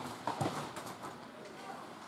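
Ice hockey play: a few sharp clacks of sticks and puck on the ice in quick succession in the first half second, over arena background noise and voices.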